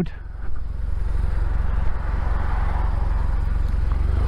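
Motorcycle engine running steadily at low speed with a low rumble, and a hiss that swells in the middle.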